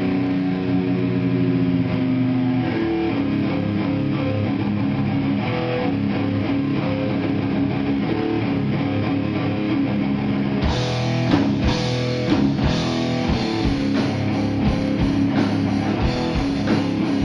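Live heavy metal band playing: electric guitars and bass hold ringing chords of the opening riff, then the drum kit comes in with cymbals and hits about ten seconds in.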